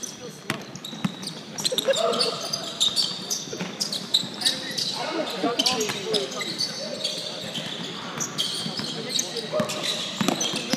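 Basketball dribbling and bouncing on a hardwood gym floor during play, with many sharp bounces and short squeaks, amid indistinct voices of players.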